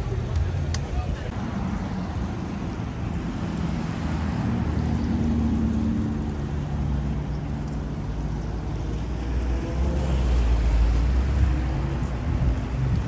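Cars driving past at low speed: engines running and road noise, one car passing close and getting louder about ten seconds in, with people's voices in the background.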